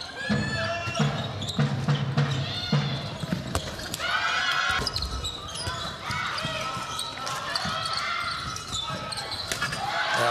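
A handball bouncing on an indoor wooden court in short repeated impacts, with players' and spectators' voices around it.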